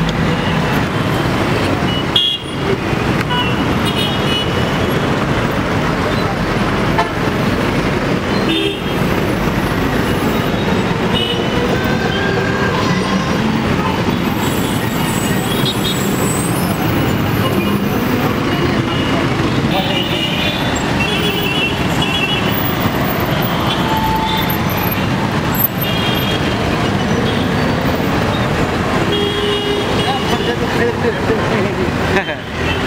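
Busy city street traffic: motorcycles, cars and buses running past, with short horn toots sounding now and then.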